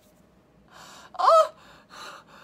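A woman's breathy, gasping laugh: soft huffs of breath around one short, high-pitched squeal that rises in pitch about a second in.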